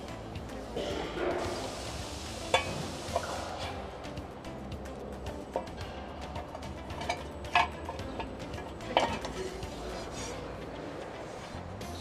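A few sharp metal clinks and knocks as a cover is taken off among the hydraulic hoses of a jaw crusher, over quiet background music.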